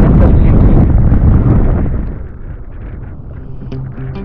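Wind buffeting an action camera's microphone, a loud low rumble that drops away sharply about halfway through to a quieter rush.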